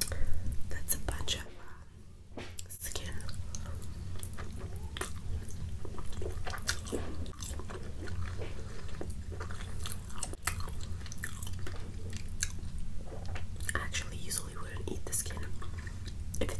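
Close-miked chewing of rotisserie chicken: wet, irregular mouth clicks and smacks as the meat and skin are eaten, with a steady low hum underneath.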